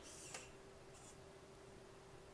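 Near silence, with one faint click about a third of a second in as a SwitchBot Bot's motorised arm flips a wall light switch on; a soft steady hum lies underneath.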